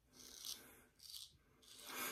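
Faint scraping of an Economy Supply 800 straight razor cutting stubble through lather on the neck: two short strokes.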